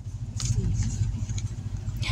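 Low, steady rumble of an idling car engine heard from inside the cabin, with two light clicks about half a second and a second and a half in.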